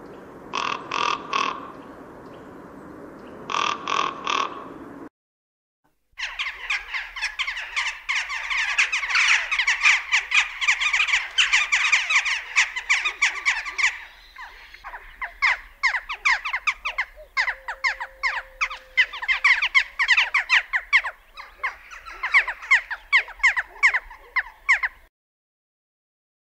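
Common raven calling in two short bursts of croaks over a steady background hiss. After a second of silence, western jackdaws call for about twenty seconds: many short, sharp calls in quick, overlapping succession, like a busy colony, stopping suddenly near the end.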